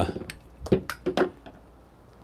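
Several short, sharp clinks of a stainless steel espresso dosing cup and its funnel piece being handled and set down.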